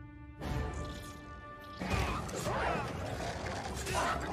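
Action-film soundtrack: a held music chord, cut into by an impact about half a second in, then from about two seconds a dense, louder mix of crashes and effects over the score.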